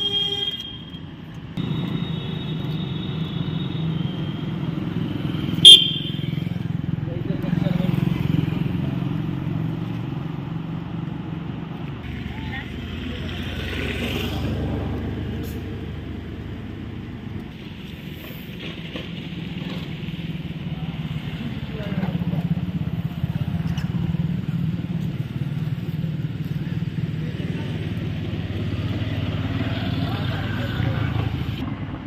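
Road traffic: vehicle and motorcycle engines running and passing in a steady low hum, with short horn toots near the start. A single sharp knock about six seconds in is the loudest sound.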